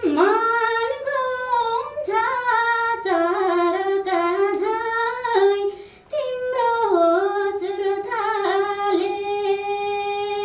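A woman singing unaccompanied, in ornamented phrases that slide between notes, with a brief breath pause about six seconds in and a long held note near the end.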